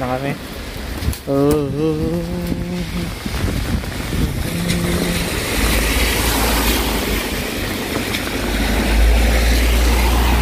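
Traffic on a rain-wet road: tyres hissing on wet asphalt, building up over several seconds, with a low engine rumble that is loudest as a car passes close near the end.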